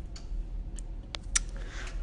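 A few scattered sharp clicks and taps from a phone being handled, the loudest about one and a half seconds in, over a steady low hum.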